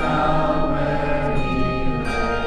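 Handbells ringing sustained chords of a carol, with a group of voices singing along.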